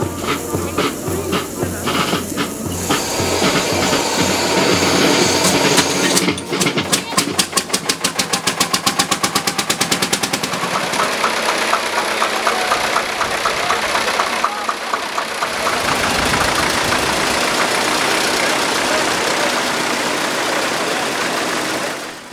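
Vintage farm tractor engines running as the tractors drive past, with a fast, even putt-putt beat for several seconds in the middle.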